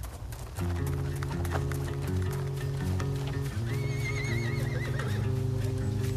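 A horse whinnying: a wavering high call of about a second and a half, starting near the middle, over soundtrack music of sustained low chords that comes in less than a second in, with short clicks throughout.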